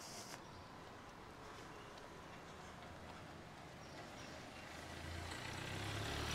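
Faint street ambience, with a car's engine growing louder over the last second or so as it approaches.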